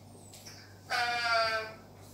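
A woman's drawn-out 'uhh' of hesitation over a video call, held for just under a second and falling slightly in pitch.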